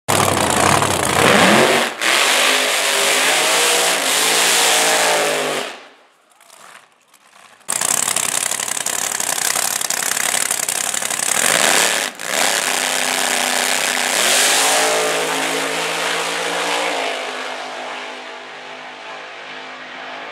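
Drag-racing Chevrolet Monte Carlo's engine at full throttle, loud, its pitch rising again and again as it goes up through the gears, then fading as the car pulls away down the strip. The sound drops out briefly about six seconds in.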